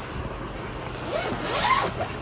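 Zipper on a clear PVC bedding bag being drawn, with rustling of the plastic, growing louder in the second half.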